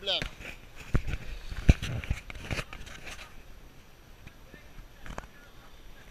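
A handful of sharp knocks and bumps of handling noise on a hand-held GoPro, the loudest about a second and a half in, over a faint outdoor background.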